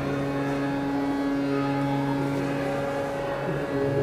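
Harmonium holding a sustained chord as a steady drone, its lowest note shifting slightly about a second and a half in, before the tabla comes in.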